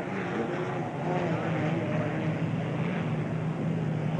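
Unlimited hydroplane at racing speed, its piston aircraft engine giving a steady drone with a low hum that holds one pitch.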